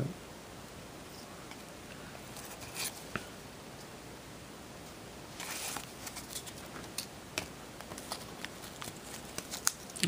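Quiet handling of trading cards and a wax-paper pack: stiff card stock sliding and being shuffled, with scattered light ticks, a brief rustle about five and a half seconds in, and more small clicks and crinkles toward the end as the pack is picked up.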